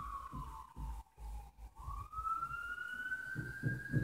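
A siren wailing in the distance: one tone slides slowly down in pitch for about the first two seconds, then climbs back up, and starts to fall again near the end.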